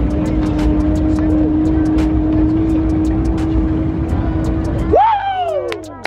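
A car at full throttle passing the speed trap at about 212 mph: a loud, steady rush with a held engine tone, then about five seconds in a sudden sharp falling drop in pitch as it goes by.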